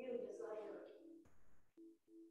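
A woman's voice reading aloud, faint, that fades out a little over a second in, followed by a few short, steady hum-like tones near the end.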